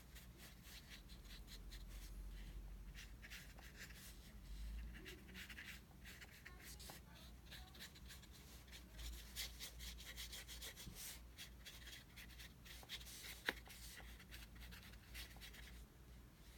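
Faint, soft swishing of a small round watercolour brush stroking wet paint across paper, in many short, irregular strokes, over a steady low hum.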